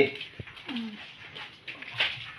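Wet squelching of grated coconut being squeezed by hand in a basin to press out the coconut milk, with a sharp click and a short falling animal call about half a second in.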